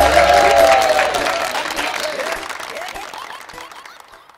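Audience applause, many hands clapping, dying away steadily over the few seconds.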